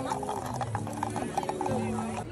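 Wooden pull toy being dragged across the pavement by its stick, its ratchet mechanism giving a rapid clicking chirp.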